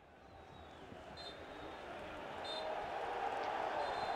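Football match ambience in an empty stadium fading in and growing steadily louder, a broad noise of voices from the bench and pitch. A referee's whistle sounds faintly and briefly, about a second in and again about two and a half seconds in.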